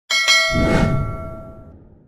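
A notification-bell chime sound effect: one bright struck ding that rings and fades away over about a second and a half.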